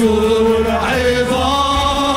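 Live worship music: voices singing long held notes over a band with keyboard, guitars and drums, the melody moving to a new note about halfway through.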